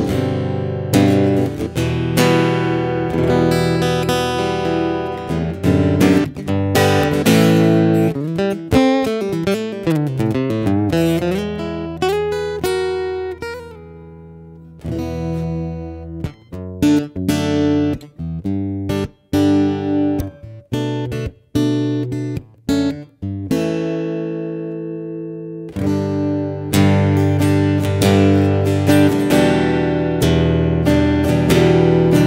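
Ibanez AEG70-VVH electro-acoustic guitar played through its under-saddle pickup and preamp, with added reverb. Chords and runs of notes give way to short, choppy chords cut off sharply in the middle. About two-thirds of the way through, one chord rings out and fades, then fuller chord playing resumes.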